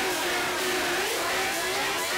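Techno from a live DJ mix in a breakdown: a held synth tone that dips in pitch about a second in and comes back, under a dense swirling synth texture, with no kick drum.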